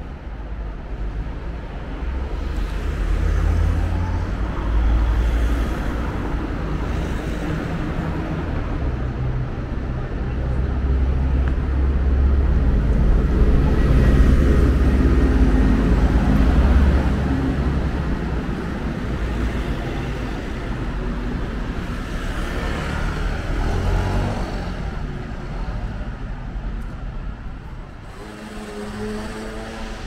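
City street traffic, with the low engine rumble of a city bus close by, loudest about halfway through. Passers-by can be heard talking near the end.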